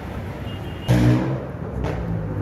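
Street traffic noise: a steady low rumble of road vehicles. About a second in, a sudden louder pitched sound lasts about half a second, and there is a short click near the end.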